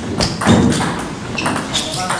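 Table tennis rally: the celluloid ball clicking off the paddles and the table in quick succession, with a heavier thud about half a second in, over voices in the hall.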